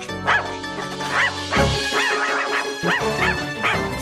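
A balloon dog's yapping: a quick series of about ten short, high yips, over background music.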